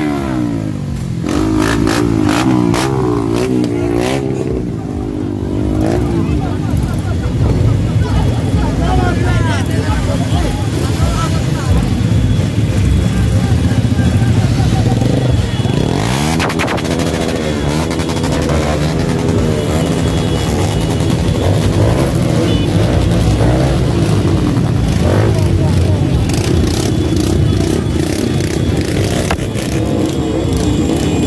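Many motorcycle engines running and revving at low speed in a slow convoy, with a crowd's voices shouting over them. One engine revs up sharply about halfway through.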